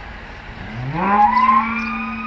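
Cow mooing: one long call that starts about half a second in, rises in pitch, then is held at a steady pitch.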